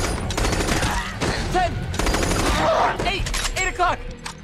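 Rifle gunfire, many shots in quick, uneven succession.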